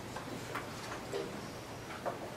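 Chalk tapping and scratching on a blackboard as a few words are written: several short, sharp clicks at uneven spacing, over a faint low steady hum.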